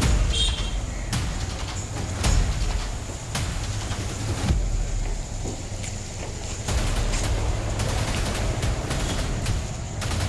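Outdoor street sound with a steady low rumble and irregular knocks roughly once a second.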